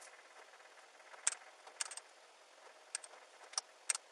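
A handful of short, sharp clicks and light rattles, about five in all, coming at uneven gaps from about a second in until the end, over a steady hiss.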